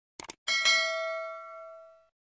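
Two quick mouse clicks, then a single bell ding that rings out in several tones and fades away over about a second and a half: the click-and-ding sound effect of a subscribe-button animation pressing the notification bell.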